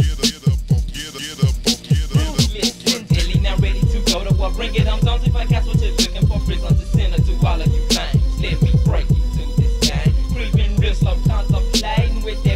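Hip hop track with rapping over a beat of kick drums that drop in pitch. The music gets louder right at the start, and a sustained deep bass comes in about three seconds in.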